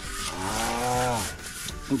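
Pork fat being rubbed across a hot cast-iron pot lid, a faint hiss as the fat greases the seasoned iron. In the middle, a drawn-out low voice sounds for about a second, rising and then falling in pitch.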